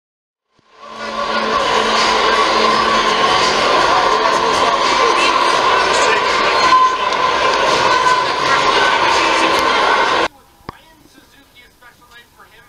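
Hockey arena crowd cheering a goal over a steady blaring goal horn. It starts about a second in and cuts off abruptly near the end.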